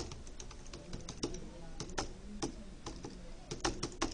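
Computer keyboard being typed on: short irregular runs of key clicks as a password is entered.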